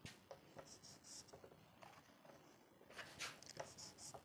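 Faint marker-pen strokes on a whiteboard: a few short, scratchy strokes, a little busier near the end.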